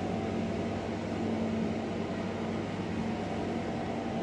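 Steady indoor machine hum with a low drone, unchanging throughout.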